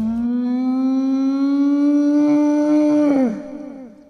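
Channel outro logo sound: one long buzzy note that rises slightly in pitch, then slides down about three seconds in and fades out with echoes.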